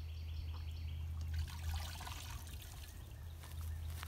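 Water trickling and splashing in a plastic tub of muddy water as a hand reaches into it, for a couple of seconds starting about a second in.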